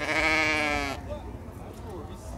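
A sheep bleating once: a single long, wavering call lasting about a second, then fading into the background noise of the pen.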